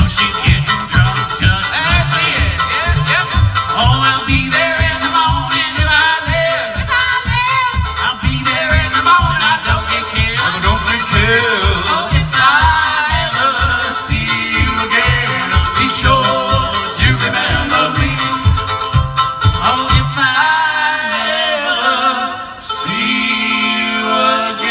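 Live string-band music on homemade instruments: banjo and washboard over a bass pulsing steadily on every beat, with a wavering lead melody on top. The bass drops out about four seconds before the end.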